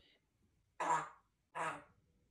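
African grey parrot giving two short, rough vocal bursts a little over half a second apart, like a cough or throat clearing.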